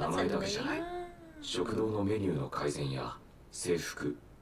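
Speech: an anime character's dialogue in Japanese, with one drawn-out syllable that rises and falls in pitch about a second in.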